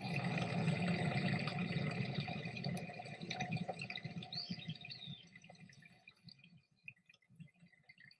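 Outdoor ambience of a wooded garden path from the tour footage: a steady wash of sound that starts abruptly and fades away over about six seconds.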